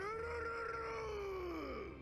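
A single drawn-out, voice-like cry from the anime episode's soundtrack: it rises quickly in pitch, holds, then slides down and fades out near the end.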